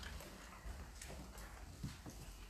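Faint, irregular footsteps on a hard floor, a few separate steps with the last one the loudest, over a low steady room hum.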